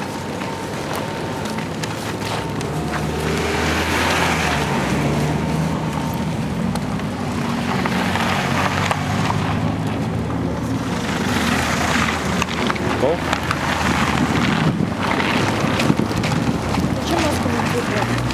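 Street ambience: a steady low hum of vehicle traffic mixed with indistinct voices of people nearby.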